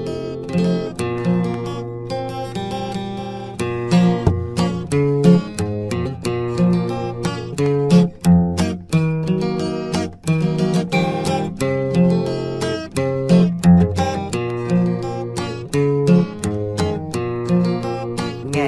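Instrumental music led by acoustic guitar: a fast run of plucked and strummed notes over lower held notes, with no singing.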